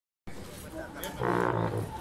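A band wind instrument sounds one short low held note a little past a second in, among faint voices.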